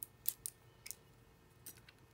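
A handful of faint, short, scratchy ticks: small handling sounds as a nail-art brush is cleaned in no-wipe top coat and wiped off.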